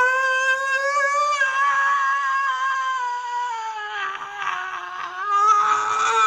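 A man's voice holding one long, high, wordless note for nearly six seconds, its pitch sagging a little in the middle and climbing back up near the end.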